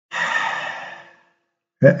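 A man's audible exhaled breath, about a second long, fading out.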